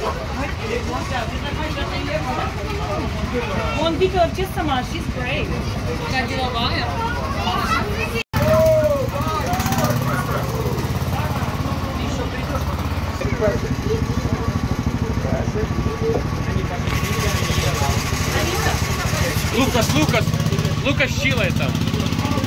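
Voices talking over the steady running of the small engine of an antique-style amusement-ride car. The sound drops out for an instant about eight seconds in, and after that the engine's low, steady hum stands out more clearly.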